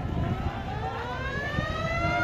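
A high whine that climbs steadily in pitch from about half a second in, over a low rumbling noise.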